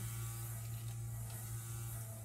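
A steady low electrical hum with no other sound standing out.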